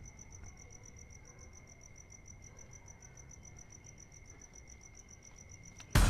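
Crickets chirping faintly in a fast, even pulse, with a steady high whine beneath.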